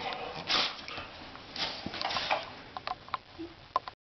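Pit bull squirming and rolling over on a sheet-covered love seat: the sheet rustles in a short burst and then a longer one, followed by a few light clicks near the end.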